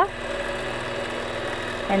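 Longarm quilting machine running steadily as it stitches a free-motion design, a continuous even hum.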